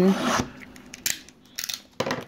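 Plastic shrink wrap on a trading-card box being cut and torn open: a click, then short scratchy rasps about a second in and again near the end.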